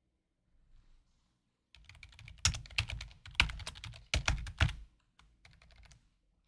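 Typing on a computer keyboard: an irregular run of key clicks, several of them sharp and loud, starting about two seconds in and stopping about a second before the end.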